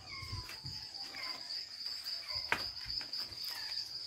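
Night insects trilling in one steady, high-pitched tone, with a few faint knocks, the sharpest about two and a half seconds in.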